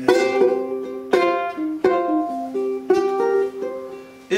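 Ukulele with a tiger-stripe myrtlewood body and Port Orford cedar neck being played: four chords struck about a second apart, each left ringing with single plucked notes between.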